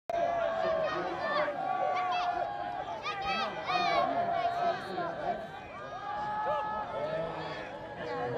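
Sideline crowd at an amateur gridiron game shouting and cheering. Several high-pitched voices overlap throughout, loudest about three to four seconds in.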